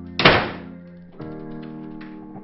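Background music of sustained keyboard chords, with one loud thump a quarter of a second in that fades away over about half a second; a new chord comes in about a second later.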